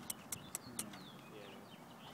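Faint bird chirps, short falling notes, after a quick run of about five sharp clicks in the first second.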